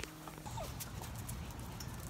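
Faint, scattered clicks and taps over a low background noise.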